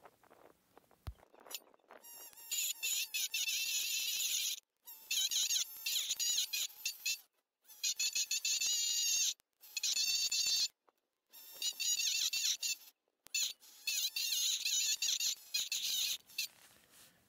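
Handheld electric etching pen buzzing as its tip engraves letters into the tin-plate lid of a can. A high-pitched buzz starts about two seconds in and comes in several runs of a second or more, broken by short breaks.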